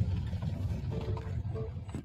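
Low, steady rumble of a moving car heard from inside the cabin, engine and road noise together, cutting off at the very end.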